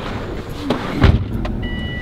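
Someone getting into a car: a few knocks and rustles, then a heavy low thump about a second in, typical of the car door shutting. A steady high-pitched tone comes on near the end.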